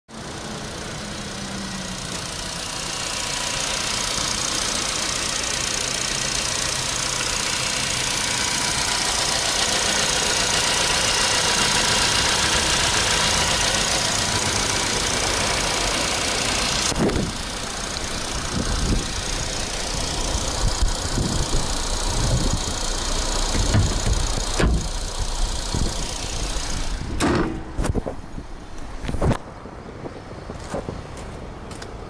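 A Nissan Bluebird Sylphy's four-cylinder petrol engine idles with the bonnet open, heard close up. It is steady and grows louder over the first half. About halfway through, the sound drops away sharply, leaving uneven thumps and a few sharp clicks near the end.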